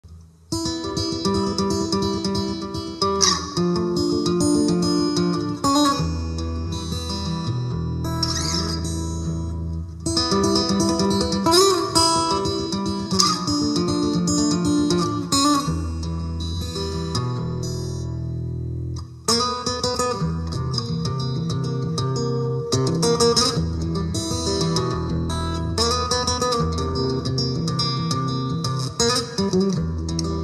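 Acoustic guitar playing an instrumental: a plucked melody over low bass notes, starting about half a second in. About two-thirds of the way through it settles on a held chord, then the picking picks up again.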